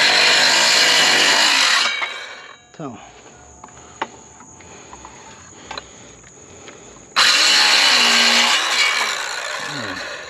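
Ryobi cordless circular saw cutting through a wooden board, then winding down as the cut ends about two seconds in. After a pause with a few light clicks, a second cut starts about seven seconds in and dies away near the end.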